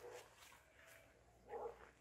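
A dog barking faintly: one short bark about one and a half seconds in, over a very quiet background.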